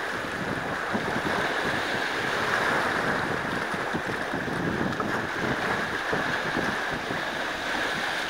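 Small waves washing in over shoreline boulders, a steady wash of water with small splashes breaking against the rocks now and then.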